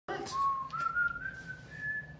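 A person whistling one long note that rises in pitch in small steps.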